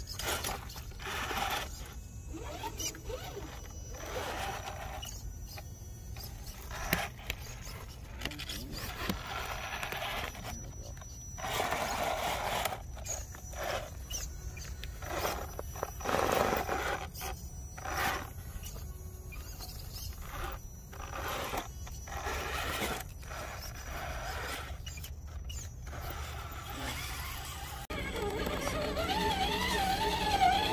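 Electric drive motors and gearboxes of RC rock crawlers whining in stop-start bursts as they are throttled up a rock face. Near the end a steadier whine sets in, its pitch wavering with the throttle.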